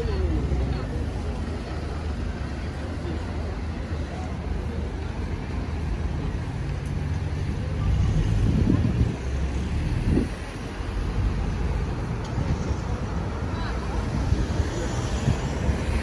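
City street traffic: a low, steady engine drone from passing vehicles, including a bus, louder for a moment about halfway through, with passers-by talking.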